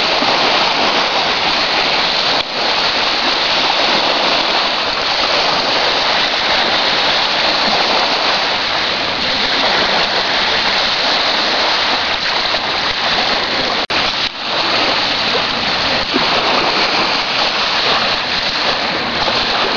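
Small lake waves washing onto a beach: a steady rushing noise that cuts out briefly twice.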